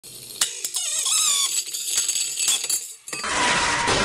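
An opened hard disk drive being powered up, giving a few sharp clicks and wavering, chirping high whines as the platter spins and the heads move. A bit past three seconds a loud rushing noise takes over.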